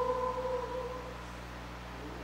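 Congregational hymn singing: the last held note of the refrain fades out in about the first second, leaving a low steady hum in the pause before the next verse.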